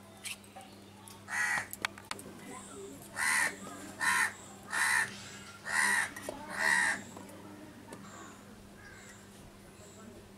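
A crow cawing six times: one caw, then after a pause five more in a row about a second apart.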